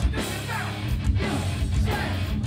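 Hardcore punk band playing live at full volume: distorted electric guitars, bass and fast drums.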